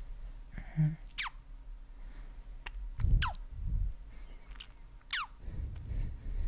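Close-miked ASMR mouth sounds: three quick kissing squeaks, each a sharp falling chirp, about two seconds apart, with soft breathy rustles after the later two. A brief hum comes a little before the first.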